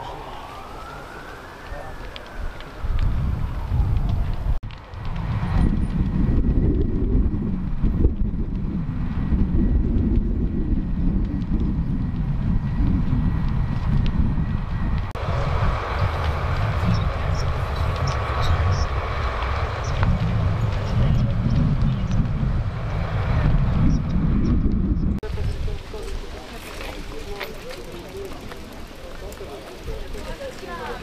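An emergency siren wails once, rising and then falling in pitch over the first few seconds, followed by a loud, low, churning rumble that lasts most of the rest and drops away about 25 seconds in.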